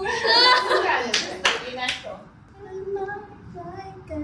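A few sharp hand claps between about one and two seconds in, among lively women's voices, followed by quieter talking.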